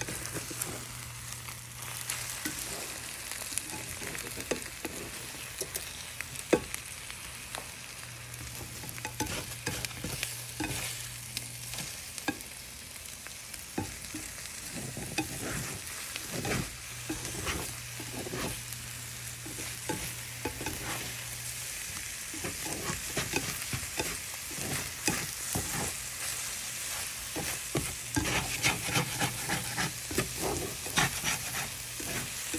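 Spinach and eggs sizzling in a nonstick frying pan while a slotted plastic spatula stirs and scrapes them around, with frequent light scrapes and taps against the pan. The stirring gets busier and louder near the end.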